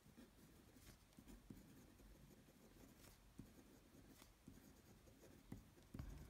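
Faint sound of a uni-ball Air rollerball pen writing on a paper worksheet: the tip scratching lightly over the page, with small ticks now and then as letters are made.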